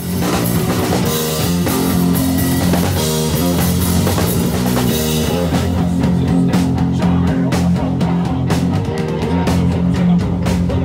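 Loud heavy rock music starts abruptly: distorted electric guitar and bass chords over a drum kit. Sharp drum and cymbal hits become prominent from about six seconds in.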